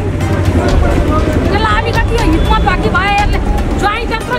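Loud, agitated voices of people talking over one another, over a low steady rumble.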